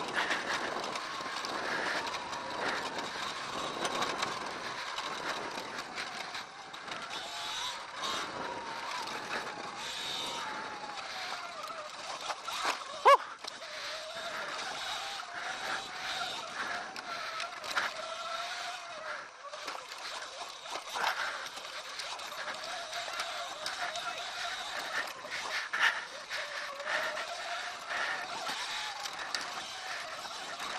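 Sur-Ron Light Bee electric dirt bike's motor whining, its pitch rising and falling with speed, over a steady rush of tyre and trail noise. A single sharp knock comes about thirteen seconds in.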